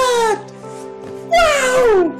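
Two long, high-pitched wailing cries, each falling in pitch, over background music with steady held notes.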